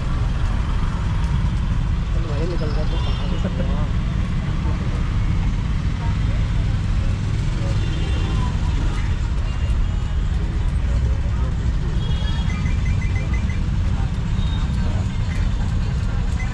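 Steady low rumble of street traffic, with short vehicle horn toots and quick runs of beeps scattered through it.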